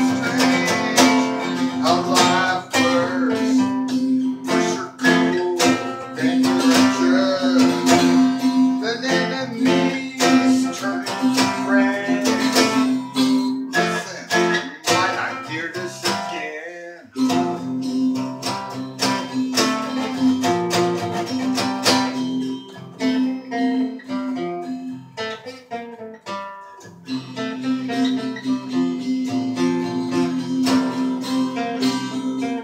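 Two guitars played together in an improvised jam: repeated strums and plucked notes over a steady held low note. The playing drops out briefly about halfway through and again near the end.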